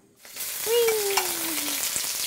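Raw shrimp searing in hot shallot oil in a wok: a sizzle that starts suddenly about a third of a second in as they go into the oil, then runs on steadily while they are turned with tongs.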